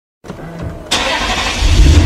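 A car engine starting: a faint low sound at first, then a sudden loud burst about a second in that settles into a deep, loud low rumble.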